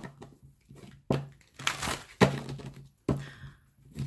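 A deck of oracle cards being shuffled by hand, with three sharp clacks of the cards about a second apart.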